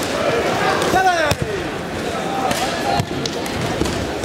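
Dull thuds of bodies landing on foam competition mats during jujitsu throws, a few sharp impacts over steady crowd chatter in a large hall. About a second in, a voice calls out loudly, falling in pitch.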